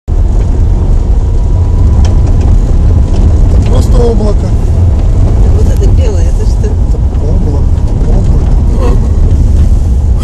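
Loud, steady low rumble inside a car cabin as the car drives over an unpaved, gravel road surface, the tyres and body shaking over the rough ground.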